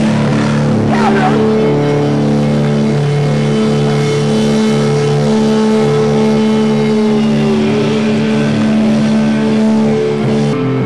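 Live rock band played loud through a PA and recorded from inside the crowd: distorted electric guitars hold sustained ringing notes, with a high note that bends downward about three quarters of the way through.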